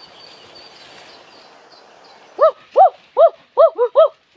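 A boy's voice giving short, repeated yelping calls, about two or three a second, starting about halfway through. Before them there is only a steady background hiss with a few faint bird chirps.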